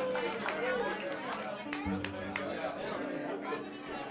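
Chatter of several people talking in a small club room between tunes, with a few faint, low, held tones underneath.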